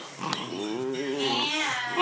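Two-month-old hound puppy bawling: one drawn-out, wavering howl that climbs in pitch partway through, the pup just beginning to open up.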